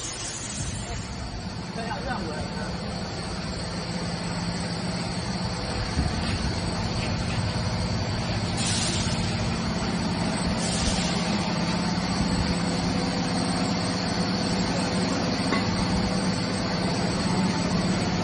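CNC pipe and sheet cutting machine running: a steady low hum with a thin high whine that grows louder over the first several seconds. Two brief hissing surges come about nine and eleven seconds in.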